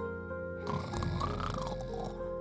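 Gentle background music with held notes. About a second in comes a cartoon snore, a raspy breath that rises and falls in pitch: the character has just dropped off to sleep.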